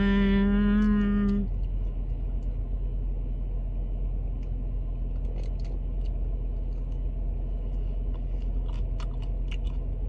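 A long hummed 'mmm' of enjoyment in the first second and a half, then a person chewing food, with scattered small crunching clicks that come more often in the second half. A steady low rumble from the car runs underneath.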